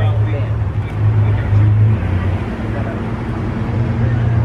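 A motor vehicle engine running steadily with a low hum, a little louder for a moment about a second and a half in.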